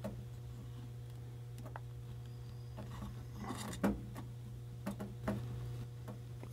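A few faint clicks and taps of small metal parts as a hole adapter is slid onto a dial indicator and fitted, over a steady low hum.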